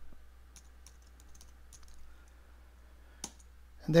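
Faint, scattered keystrokes on a computer keyboard, with one louder key click about three seconds in.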